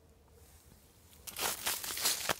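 Near silence, then, about a second in, a plastic bag in a wicker mushroom basket starts crinkling and rustling loudly as it is handled, with several sharp crackles.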